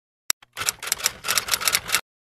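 A single sharp click, then about a second and a half of rapid, dense clicking and clatter that stops abruptly.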